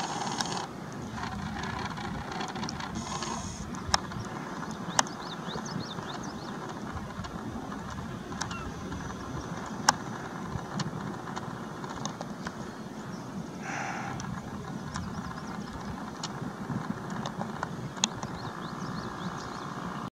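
Steady outdoor background noise with a low rumble, broken by a few sharp clicks; the loudest click comes about ten seconds in.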